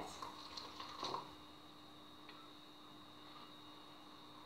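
Faint soft handling noises from hands working flour and dough in a ceramic bowl, a few small clicks in the first second or so, over a faint steady hum.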